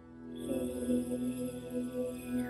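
Meditation music: a soft sustained drone, joined about half a second in by a chanted mantra-like voice held on a steady note, with a high shimmering layer above.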